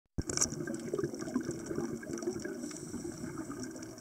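Underwater sound picked up by a camera while diving: a steady watery rush with fine crackling ticks throughout.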